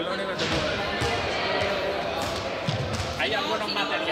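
Many people talking at once in a reverberant sports hall, with a few short thuds about two to three seconds in.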